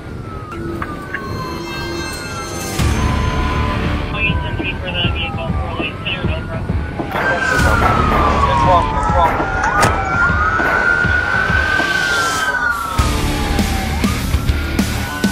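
Police car siren wailing, its pitch sweeping slowly up and down over and over, with two sirens overlapping at times in the second half, over a low vehicle rumble.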